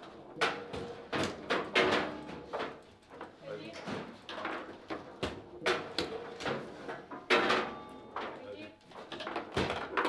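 Table football in fast play: an irregular run of sharp clacks and knocks as the ball is struck by the rod-mounted player figures and bangs against the walls of the table, with a goal scored partway through.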